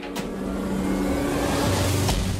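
Dramatic background score swelling: a held chord that grows steadily louder under a rising whoosh, with a deeper note coming in near the end.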